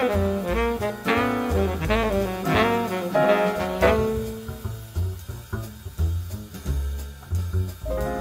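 Live jazz quartet: a baritone saxophone plays melodic phrases over piano, upright bass and a drum kit. About halfway through the horn stops, leaving the walking bass, cymbals and piano.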